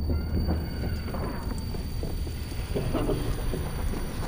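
Film sound design for an overturned, wrecked car after an explosion: a steady deep rumble with a few faint sliding tones and scattered light knocks.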